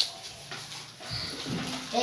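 A lull between group recitations: faint children's voices murmur, with a short sharp sound at the very start.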